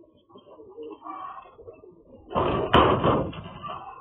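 Pigeons cooing, then about two and a half seconds in a loud flurry of wing flapping lasting about a second, with one sharp knock in it, as the flock is startled.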